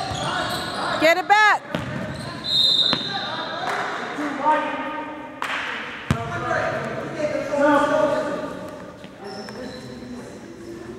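Basketball dribbled on a hardwood gym floor with sneakers squeaking, then a short referee's whistle blast about two and a half seconds in. After that come voices of players and spectators, with a few more ball bounces in the echoing hall.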